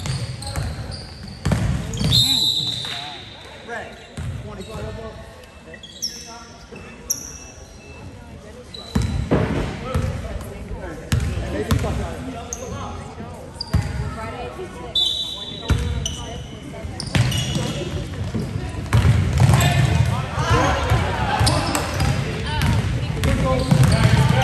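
Basketball game sounds in a school gym: the ball bouncing on the hardwood floor, sneakers squeaking, and spectators talking and calling out. The crowd noise grows louder in the last few seconds.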